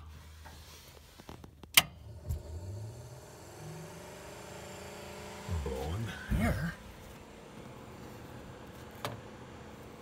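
A switch clicks sharply about two seconds in, and the 1938 Plymouth's under-dash heater blower fan spins up, its hum rising in pitch and then running steady. A short hum of a voice comes a little past the middle.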